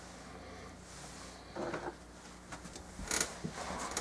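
Small plastic handling sounds, probably a fabric-softener cap and bottles moved on a work table: a short squeak about one and a half seconds in, then a quick run of clicks and knocks near the end, over a faint steady hum.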